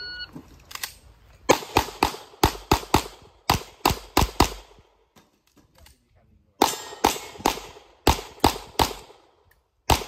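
Electronic shot-timer start beep, then semi-automatic pistol shots fired in quick pairs in a rapid string, a pause of about a second and a half, a second string of shots, and one last shot at the very end.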